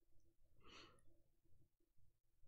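Near silence, with one faint breathy exhale through the nose, like a quiet amused breath, about half a second to one second in.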